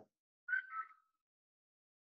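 A short whistle-like sound about half a second in: two quick chirps whose tone falls slightly in pitch, lasting about half a second.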